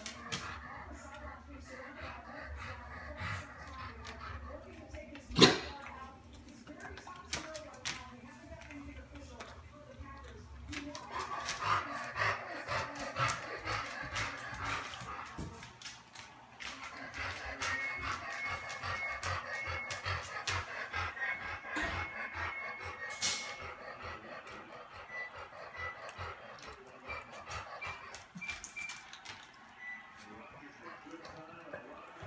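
Ferrets eating a dog's dry kibble from his bowl: scattered small crunches and clicks of food and bowl, with one loud knock about five seconds in, under a murmur of background voices and music.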